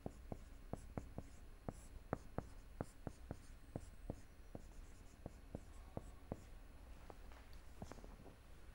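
Marker pen writing on a whiteboard: faint, irregular taps and short strokes of the tip against the board, a few a second.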